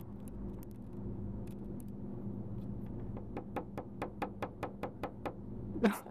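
A white cockatoo's beak clicking rapidly, about ten sharp clicks at roughly five a second, over a steady hum.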